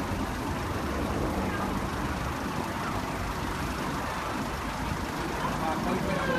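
Steady city street traffic noise, with people's voices in the background that grow clearer near the end.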